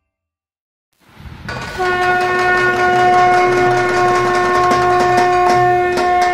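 After about a second of silence, a loud, long, steady horn-like note sets in over a low rumble and holds at one pitch, with scattered clicks joining near the end.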